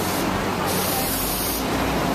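Sharp hiss of air from a London double-decker bus's air brakes, starting a little under a second in and lasting about a second, over steady street traffic.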